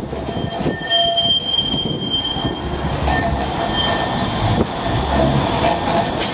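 Manchester Metrolink tram running on its rails over a low rumble, its wheels squealing in thin, steady high tones for a second or two.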